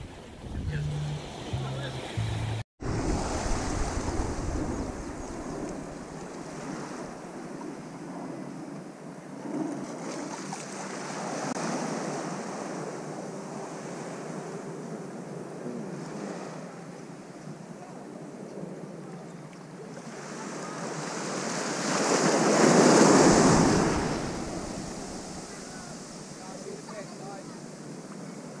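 Small waves lapping and washing up onto a sandy shore, the wash swelling and fading, loudest about 22 seconds in. A brief dropout about three seconds in breaks off a short stretch of low steady tones.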